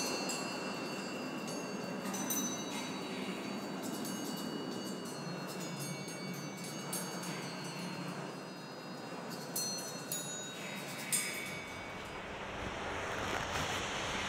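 Small metal bowls of a sound installation ringing with high, lingering bell-like tones. They are struck a few times, once about two seconds in and several times close together around ten seconds, over a steady background hiss.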